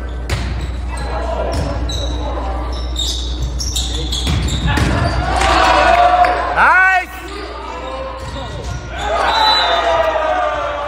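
Volleyball rally in a gymnasium: sharp smacks of hands on the ball from the serve and the passes, short squeaks of sneakers on the hardwood court, and voices of players and spectators shouting, loudest around six to seven seconds in, echoing in the hall.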